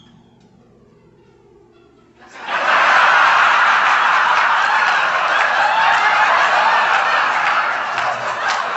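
A large audience breaks into loud laughter about two seconds in and keeps laughing.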